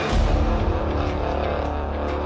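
Music in which a deep, steady bass comes in suddenly at the start and holds under sustained tones.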